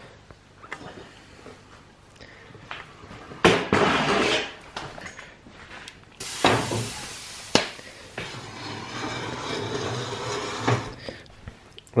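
Handling noise as a stainless steel stockpot of maple syrup is carried and set on a cast-iron wood cook stove: scattered knocks and rustles, a loud rush of noise about three and a half seconds in, then a hiss just after six seconds that ends in a sharp clack, followed by a softer steady hiss.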